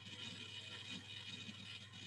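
Faint open-microphone background on a video call: a steady low electrical hum with a soft rustling, scraping noise over it.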